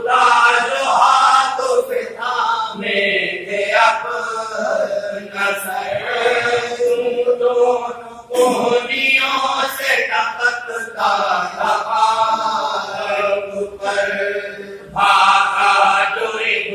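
Men's voices chanting a marsiya, a mourning elegy, in a slow melodic recitation, in sung phrases a few seconds long with brief pauses between.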